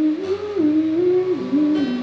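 A woman humming a slow melody of held notes that step up and down, over soft acoustic guitar underneath.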